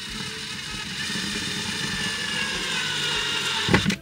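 Handheld power drill running steadily, drilling a hole into a camper van wall panel, its pitch sagging slightly under load. A short louder burst comes just before it stops near the end.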